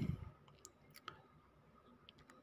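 A few faint, scattered single clicks over quiet room tone.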